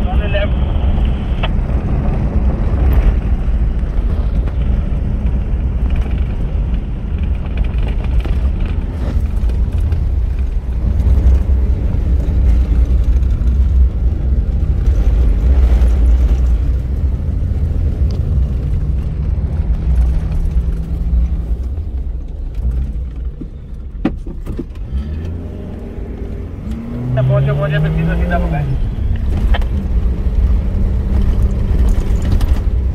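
A four-wheel-drive vehicle driving over desert sand, heard from inside the cab: a loud, steady low rumble of engine and tyres. It eases off for a few seconds near the end, with a couple of knocks.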